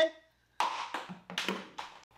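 A quick run of about six sharp clicks and taps from hands working a pressure-washer spray gun and its quick-connect nozzle tip as the tip is being changed.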